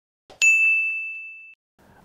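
Notification-bell sound effect for a subscribe-button animation: a faint click, then a single bright ding that rings and fades out over about a second.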